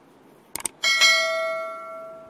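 Subscribe-button animation sound effect: a quick double mouse click about half a second in, then a small notification bell dings and rings out, slowly dying away over more than a second.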